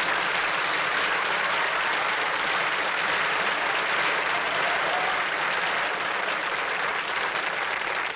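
Studio audience applauding steadily, the clapping easing slightly near the end.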